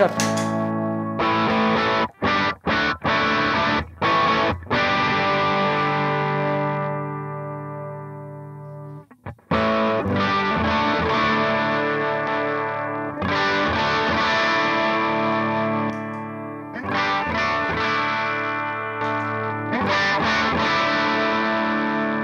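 Electric guitar played through an MCG Genesis overdrive pedal in a Line 6 POD GO's mono FX loop, giving overdriven chords into an amp model with no EQ set. A few chords are cut short in quick succession early on. One chord rings out and fades almost to silence, and then more chords are left to sustain.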